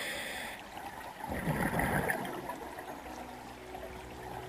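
Scuba diver breathing through a regulator underwater. A hiss of inhaling ends about half a second in, then a loud gurgling rush of exhaled bubbles follows for about a second.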